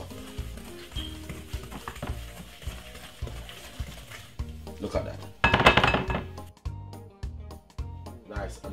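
Wooden spoon stirring and scraping butter and sugar against a glass mixing bowl as they are creamed, over background music. One louder half-second burst comes about five and a half seconds in.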